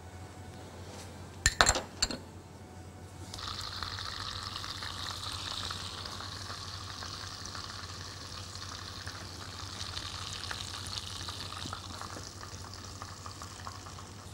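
Breaded, pumpkin-filled toast slices frying in hot oil and butter in a pan: a steady sizzle that begins about three seconds in and carries on. Just before it, a few sharp clicks.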